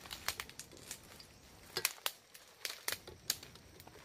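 Footsteps in dry leaf litter and twigs on the forest floor, making irregular, sharp crackles and crunches.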